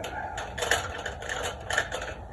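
Irregular light metallic clicks and rattles of small parts and tools being handled at an outboard's powerhead, over a low steady hum.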